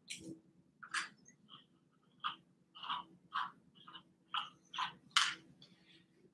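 Soft strokes of a slicker brush through a Cavoodle's curly coat: about ten short brushing swishes, roughly two a second.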